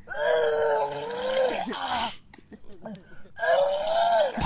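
A person retching and vomiting: a long, loud groaning heave, a short rush of noise near two seconds in, then a second drawn-out groaning heave near the end.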